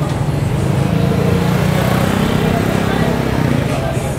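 A motor scooter's small engine running close by as it rides up the lane, a steady low hum that swells in the middle and eases off near the end, with voices in the street.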